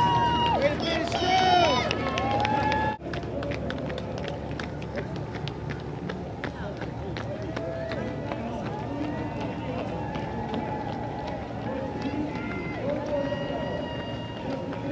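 Loud voices calling out for about the first three seconds. After an abrupt cut, the steady patter of many runners' footsteps on pavement, with a hubbub of distant voices.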